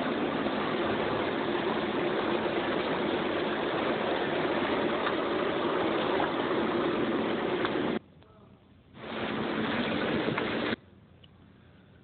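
Soundtrack of a video clip played over loudspeakers: a steady rushing noise with a low hum. It drops out about eight seconds in, returns for about two seconds, then stops.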